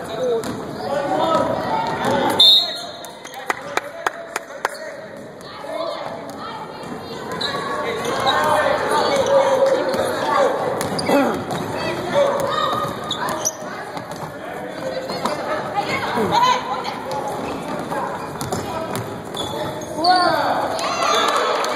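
Basketball game sounds in a large echoing gym: a basketball bouncing on the hardwood court, with a run of sharp bounces a few seconds in, under the voices of players and people on the bench.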